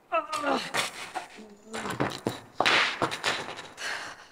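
A woman's dismayed "oh", falling in pitch, followed by a low vocal groan and several short, breathy exasperated huffs.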